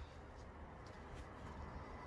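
Faint outdoor background noise with a low rumble and no distinct sound event.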